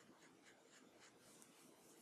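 Faint short strokes of a Copic alcohol marker on printer paper, a soft scratching about three times a second.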